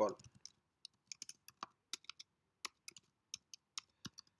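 Typing on a computer keyboard: a run of faint, irregularly spaced keystrokes.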